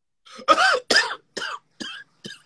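A man coughing: a run of about four short, hoarse coughs roughly half a second apart, each weaker than the last.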